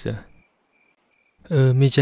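Faint insect chirping in the background: short high chirps repeating at an even pace, heard under and between a man's narrating voice.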